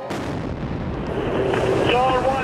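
A pressure-cooker bomb exploding: a sharp blast just as the sound opens, then a dense roar of noise that swells, with voices crying out near the end.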